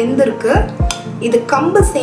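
Background music with a deep drum beat and a melodic voice over it.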